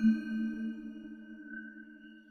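Eerie ambient background music: several held, ringing tones that swell at the start and then slowly fade.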